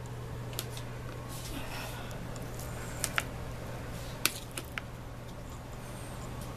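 A few short, light clicks and taps from handling, two about three seconds in and a small cluster just after four seconds, over a steady low hum.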